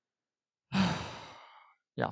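A man sighs once: a single breath out that starts about two-thirds of a second in, strongest at its start and fading away over about a second.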